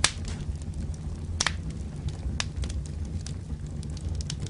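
Fire sound effect: a steady low rumble of flames with sharp cracks and pops scattered through it, the strongest right at the start and about a second and a half in.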